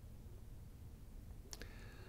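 Quiet room tone with a low hum and a single sharp click about three-quarters of the way through.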